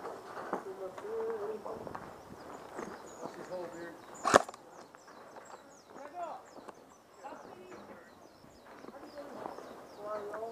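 A single sharp airsoft gun shot about four seconds in, with faint distant voices around it.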